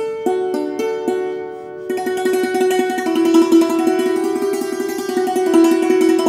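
Santoor struck with a pair of wooden mallets (kalam): a few single notes, then from about two seconds in a fast, unbroken run of repeated strikes. This is a demonstration of the traditional Kashmiri way of playing the instrument.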